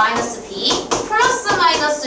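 A person's voice speaking in a classroom, with a sharp knock right at the start as chalk taps onto the board while the quadratic formula is written.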